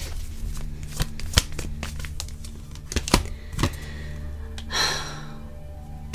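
Tarot cards being shuffled and handled: a string of sharp clicks and snaps, with a brushing swish a little before the end, over a steady low hum.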